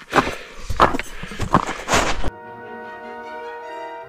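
Loud irregular rustling and knocking, as of a handheld camera moving with the hiker over snow. About two seconds in it cuts off abruptly to background music with sustained, slowly changing orchestral tones.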